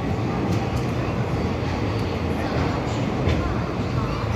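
Passenger train coaches rolling slowly into a platform: a steady rumble of wheels on rail, with a few sharp clicks.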